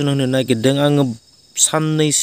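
A man talking, with a short pause just past a second in, over a steady high-pitched trill of insects in the background.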